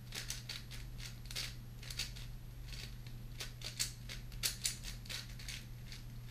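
A 4x4 speedcube being turned quickly by hand: rapid, irregular plastic clicks and clacks of the layers turning, several a second.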